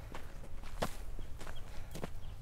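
Footsteps walking on a dirt hiking trail: about four uneven footfalls, the loudest a little under a second in.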